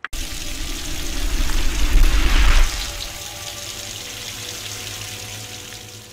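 Rushing water, starting suddenly, swelling for about two and a half seconds with a deep rumble under it, then easing to a steadier, quieter wash.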